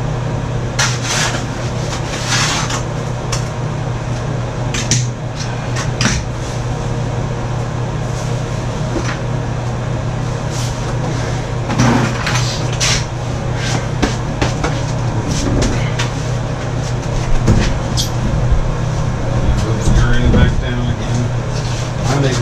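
Scattered knocks, bumps and short scrapes as a bathtub is pushed and settled down into a mortar bed, over a steady low hum.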